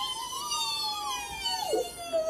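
A toddler's long, high-pitched playful squeal, held for about a second and a half with a slight rise and fall, then dropping away near the end.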